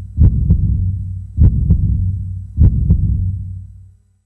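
Heartbeat sound effect: deep double thumps, lub-dub, repeating about once every 1.2 seconds over a low hum, fading out near the end.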